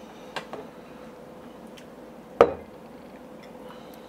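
A glass whiskey bottle set down on a wooden bar top with one sharp knock about halfway through, after a couple of faint clicks as it is handled.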